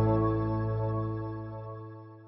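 Background music: a sustained chord fading out steadily.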